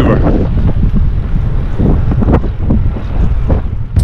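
Wind buffeting the camera's microphone while riding a bicycle, a heavy, steady rumble with a few faint snatches of voice under it.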